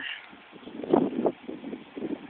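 Gusty wind buffeting the microphone, with a cluster of irregular bursts about a second in.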